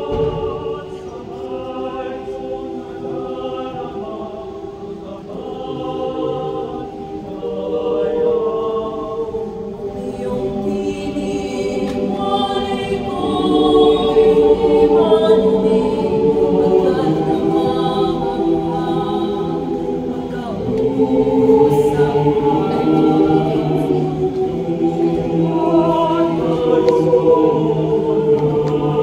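Mixed choir of women's and men's voices singing in sustained harmony through stage microphones. It grows louder about halfway through and again near the end, where a low bass line comes in.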